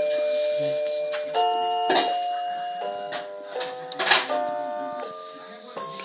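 Toy electronic keyboard playing a slow melody of held electronic notes, about seven in all, each lasting roughly a second. Two sharp clicks come about two and four seconds in, the second one the loudest sound.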